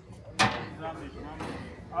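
A single sharp knock about half a second in, followed by faint voices.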